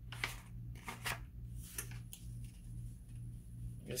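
Paper rustling and sliding in several short strokes as a hand smooths sheets of paper flat over a towel. A steady low hum runs underneath.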